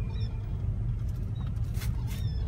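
Low steady rumble of a car's engine and surrounding traffic heard from inside the cabin while crawling in stop-and-go traffic. A couple of faint short high chirps sound over it, and there is a brief rustle near the end.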